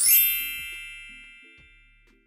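A bright, bell-like chime sounds once right at the start and rings out, fading away over about two seconds, over a few soft low notes of outro music.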